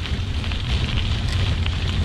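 Bicycle riding over a wet, leaf-strewn gravel path, heard from a handlebar-mounted camera: a steady low rumble of wind and ride vibration under a dense crackle of tyres on the gravel.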